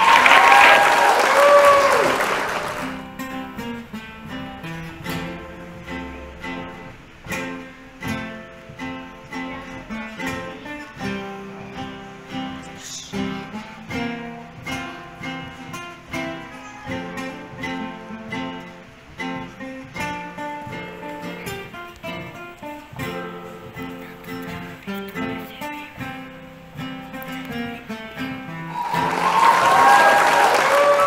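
Applause and cheers for the first few seconds, then two classical guitars playing a plucked duet. The applause rises again near the end.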